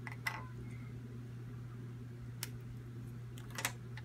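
Graham cracker pieces snapped in half by hand: a few short, sharp cracks, one about halfway through and a quick double crack near the end, over a steady low room hum.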